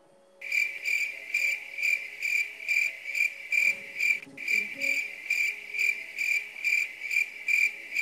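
Crickets-chirping sound effect, a high pulsing chirp about three times a second that starts and stops abruptly: the classic gag for an awkward silence.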